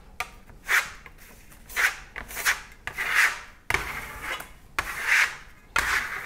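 Steel Venetian plaster trowel scraping across a sample board in a series of short strokes, about one a second, as it spreads and smooths a thin coat of matte pearlescent decorative paint.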